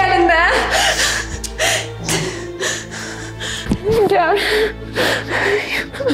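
A woman sobbing, whimpering and gasping in fright, her voice quivering, over a low, steady background music score.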